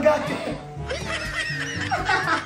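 A group of people laughing and snickering over background music.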